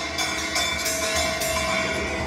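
Large drum kit played with sticks: a run of drum strokes over ringing cymbals.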